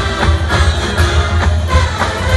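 Marching band playing, with brass over drums and front-ensemble percussion and a steady beat of drum hits about twice a second.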